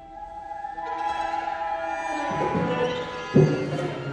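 Chamber orchestra playing contemporary classical music: quiet held notes swell about a second in into a louder, denser texture, and a sharp percussion stroke about three and a half seconds in is the loudest moment, after which low notes are held.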